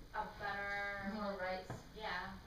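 A person's voice speaking, with one long drawn-out vowel held at a steady pitch for over a second.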